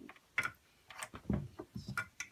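Small toys being handled on a play table: several sharp plastic clicks and taps, with a duller knock about halfway through.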